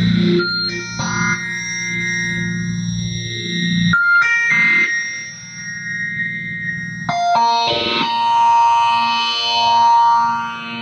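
Rhodes Mark I electric piano played through a multi-effects unit: held chords that change several times, the low bass notes dropping out about four seconds in, and a new chord swelling louder near the end.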